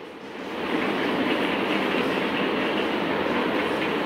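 A steady, dense rushing noise that swells during the first second and then holds level, with no voice in it.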